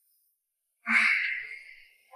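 A man's heavy sigh: a sudden breathy exhale about a second in, starting with a brief voiced grunt and fading away over about a second.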